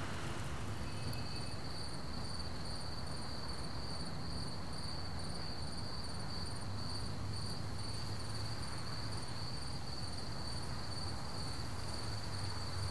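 Cricket trilling: a steady, high, continuous chirr that starts about a second in, over a low steady rumble.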